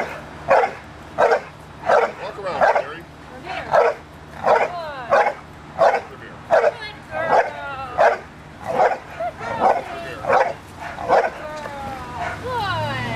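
American bulldog barking steadily and repeatedly at a helper in a blind, about one bark every two-thirds of a second: the bark-and-hold phase of Schutzhund protection work. Some whining is heard between the barks in the middle.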